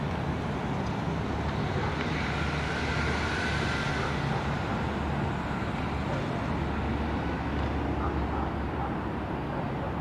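Steady low rumble of motor-vehicle traffic, swelling around three to four seconds in as a vehicle passes, with a faint whine.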